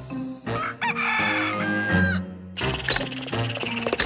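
A rooster crowing sound effect over a light bed of cartoon music. About two and a half seconds in, it gives way to a busier music cue with sharp hits.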